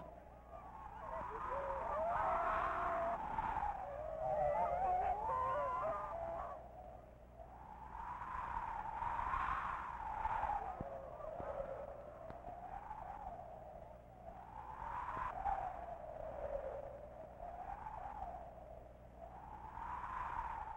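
Sled dogs howling: several howls glide and overlap at first, then one long wavering howl rises and falls every couple of seconds.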